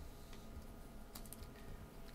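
Quiet room tone with a few faint clicks, a small cluster of them about a second in.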